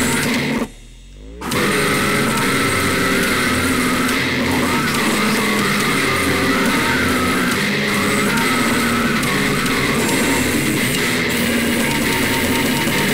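Slamming brutal death metal recording: distorted guitars and drums playing densely, with a brief break under a second long about half a second in, where only a low bass tone remains before the band comes back in.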